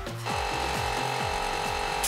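Piston air compressor (Fubag) switched on and running with a steady hum, pumping air to pressure-test a silicone coolant hose. Background music with a steady beat plays over it.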